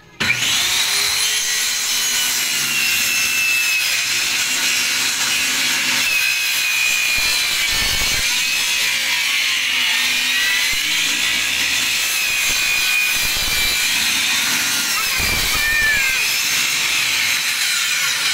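Handheld electric circular saw starting up and cutting a long straight line through a plywood sheet. It starts abruptly and runs steadily, with a high whine that wavers in pitch as the blade bites into the wood.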